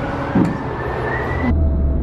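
Busy arcade ambience: a steady din of game machines, with a short thump about half a second in. The sound dulls abruptly about one and a half seconds in.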